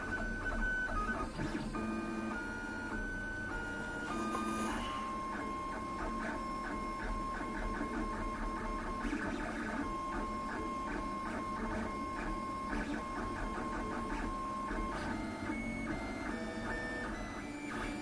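LulzBot TAZ 6 3D printer printing its first layers: the stepper motors whine in steady tones that jump from one pitch to another as the print head changes direction and speed, with a quick, even run of short ticks through the middle.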